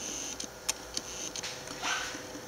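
A few faint, sharp clicks over quiet room noise, with a short breathy sound just before the end.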